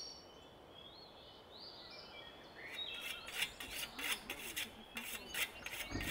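Faint bird chirps, then from about halfway a rhythmic scraping of a long-handled hand tool's metal blade, about three strokes a second.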